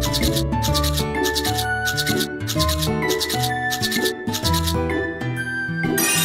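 Cartoon toothbrush scrubbing sound effect: quick, even brushing strokes, about two or three a second, that stop a little over four seconds in. It plays over bright children's background music.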